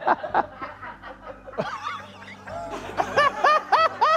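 People laughing: scattered chuckles in the first second, then a quick run of short, high-pitched laughs from about two and a half seconds in, over soft background music.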